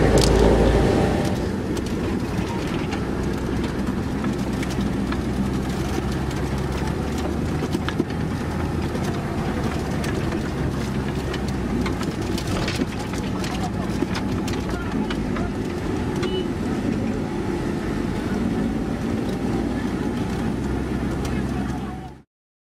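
Armoured vehicle's engine running steadily, heard from inside the cabin as an even low drone, with a few sharp clicks and knocks.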